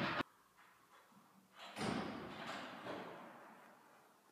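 A single heavy thud echoing through a large church interior and dying away over about two seconds, with a smaller knock about a second after it.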